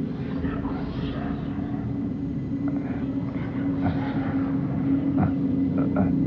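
Low, steady droning hum from the film's soundtrack, with faint scattered higher sounds over it, growing slightly louder in the second half.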